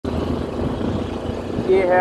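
Motorcycle running as it rides along a road, heard as a low steady rumble.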